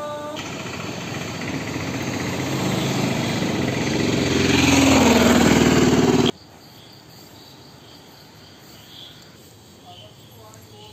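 Road traffic growing louder as a motor vehicle approaches and passes close, engine and tyre noise, cut off suddenly about six seconds in. After that, faint crickets chirping in a quiet evening background.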